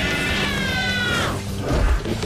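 Cartoon fight soundtrack: music under a high, wavering cry that slides down in pitch about a second and a half in, followed by a heavy low thud near the end.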